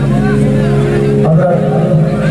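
Male qawwali singing over sustained, held keyboard notes that drone steadily beneath the voice.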